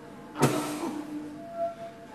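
Free-jazz saxophone duet on alto, baritone and tenor saxophones: held tones broken about half a second in by a sudden harsh, noisy blast, the loudest sound here, that fades over about half a second, then a higher held note near the end.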